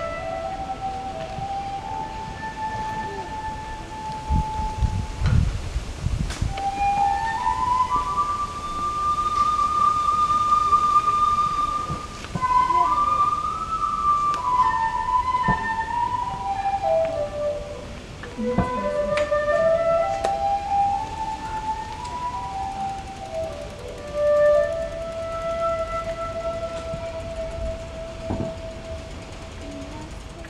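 Solo Japanese bamboo flute playing a slow melody of long held notes joined by pitch slides. The line climbs, falls away low about eighteen seconds in, then rises again and settles on a long held note. A few low thumps come about five seconds in.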